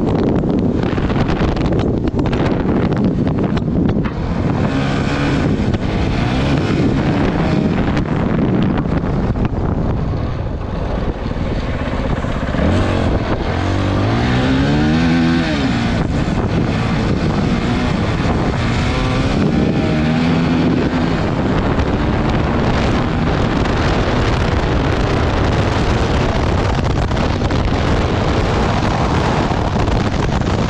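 Honda CRF450RL's 450 cc single-cylinder four-stroke engine pulling hard at speed, its revs climbing for a couple of seconds about halfway through, then dropping and climbing again shortly after. Wind rushes on the microphone throughout.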